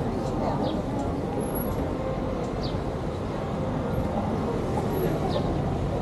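City street ambience: a steady rumble of passing traffic with the voices of passers-by in the background, and a few short, high, falling chirps.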